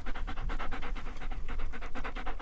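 German Shepherd-type dog panting close to the microphone: quick, even breaths in and out through an open mouth.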